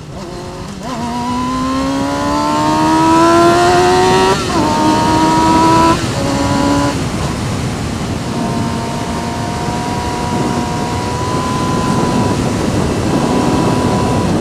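Sport motorcycle engine accelerating hard for an overtake, its pitch climbing steadily for about three seconds before dropping at an upshift. After a couple more drops in pitch it settles into a steady note at high speed, with wind rushing over the microphone.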